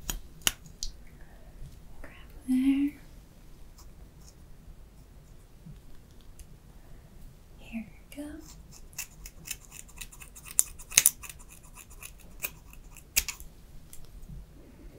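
Hair-cutting scissors snipping through hair: a few scattered snips, then a quick run of snips from about nine seconds in that lasts roughly four seconds.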